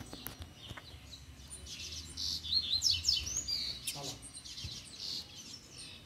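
Coleiro (double-collared seedeater) singing a quick run of high chirps and rising and falling whistled notes, densest from about two to three and a half seconds in.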